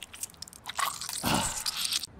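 Cartoon crunching and squishing sound effects, a run of crackly clicks with a louder squelchy burst about a second and a quarter in.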